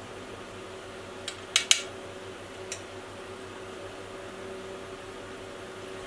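A few light clinks of a metal spoon on a glass bowl and plate: a quick cluster about one and a half seconds in and one more near three seconds, over a steady fan hum.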